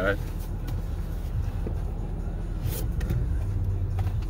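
Steady low rumble inside a car, with light taps and rustles of a cardboard trading-card box being handled, and a short scrape of packaging near three seconds in.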